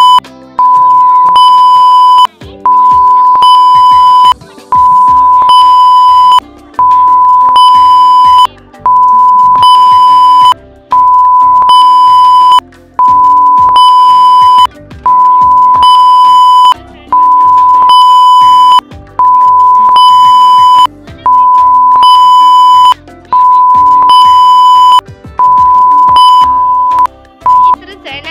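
A loud, steady, single-pitch electronic bleep tone, the classic censor-bleep sound effect, repeating about every two seconds. Each bleep lasts about a second and a half, with short gaps between them, over background music.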